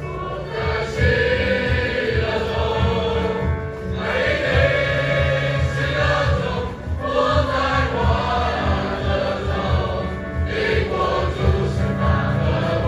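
Mixed school choir of boys and girls singing a hymn, phrase by phrase, with short breaks between phrases every few seconds.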